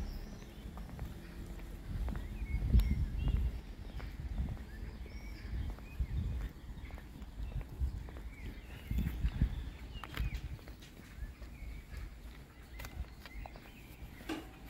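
Footsteps on a paved path as the walker moves along, with small birds chirping. Gusts of wind rumble on the microphone, strongest about two to three seconds in and again near ten seconds.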